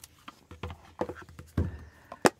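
Hands handling and opening a cardboard card box: a handful of soft taps and knocks spread over two seconds, one a duller thump near the end.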